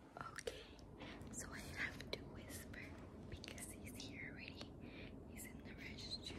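A woman whispering quietly in short breathy phrases, too soft for the words to be made out.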